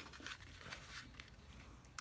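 Near silence with faint handling of cardstock: a few soft taps and light rustle as a paper panel is laid onto a card base.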